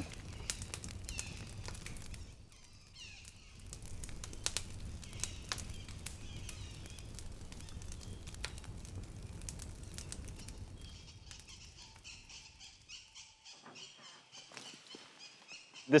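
Outdoor ambience: a low rumble with scattered sharp clicks and crackles, then a small bird or insect calling in a fast, evenly repeated high-pitched chirp for the last few seconds.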